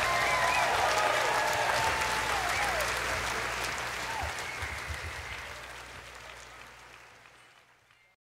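Audience applauding, with a few whistles, after a live electric blues song ends; the applause fades down and is gone about seven seconds in.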